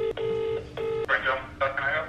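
Ringing tone of an outgoing call played over a smartphone's loudspeaker: a steady low purring tone in short pulses with brief gaps. About a second in the ringing stops and voices follow.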